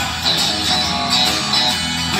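Live country band playing an instrumental guitar break between sung lines, strummed acoustic guitar under electric guitar and bass, heard through the arena's sound system from the crowd.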